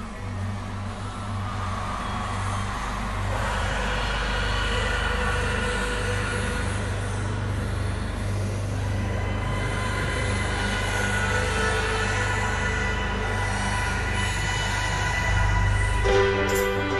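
Live band holding a sustained instrumental passage: a steady low bass drone under long held chords, with a hissing wash of sound above, growing louder about three seconds in.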